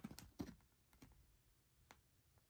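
Faint handling noise from a folded paper VHS cover insert being turned over in the hands: a cluster of light clicks and rustles in the first half second, then two fainter ticks.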